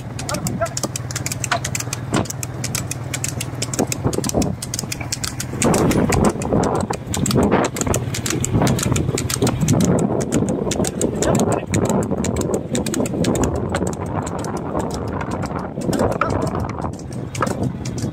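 Motorcycle engine running steadily while riding alongside a trotting water buffalo pulling a two-wheeled racing cart on tarmac, with wind noise and hoofbeats. The sound gets louder and rougher from about six seconds in.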